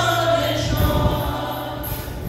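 A congregation singing a gospel hymn together, the voices holding long notes.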